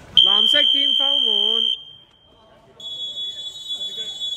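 Referee's whistle on a basketball court: one long loud blast of about a second and a half, with a shouting voice over it, then after a short gap a second, quieter blast at a slightly higher pitch that is still sounding at the end.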